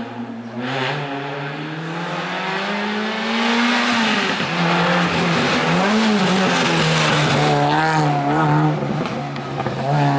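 Race-prepared Renault Clio's engine under hard acceleration, rising in pitch for about three seconds and growing louder as the car approaches. The pitch drops about four seconds in, then the engine pulls steadily and loudly through the bend.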